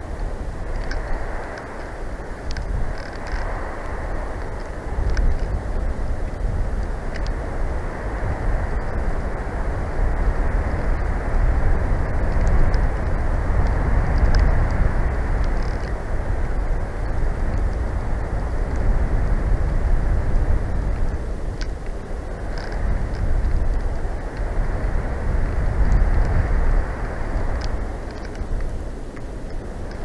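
Wind rumbling on an outdoor nest-cam microphone, rising and falling in gusts, with a few faint ticks.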